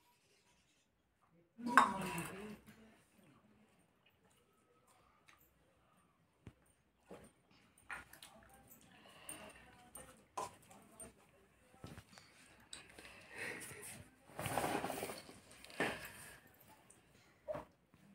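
Slurping sips from folded leaf cups, with small clinks of steel tumblers, in scattered short bursts; a louder burst about two seconds in and a cluster of noisier slurps around the fifteen-second mark.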